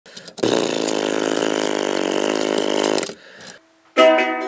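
A few short clicks, then a loud, steady, engine-like buzz lasting about two and a half seconds that dies away near the end.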